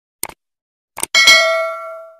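Two short mouse-click sound effects, then a bright bell ding that rings out and fades over about a second: the sounds of a subscribe button being clicked and a notification bell.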